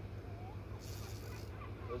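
A steady low mechanical hum, like an idling engine or generator, with a brief high hiss about a second in and a few faint bird chirps.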